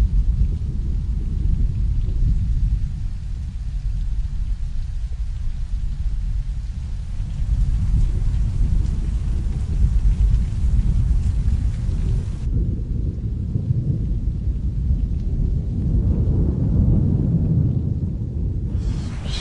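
Heavy rain falling, with a steady low rumble of thunder beneath it. The higher hiss of the rain thins about twelve seconds in, while the low rumble carries on.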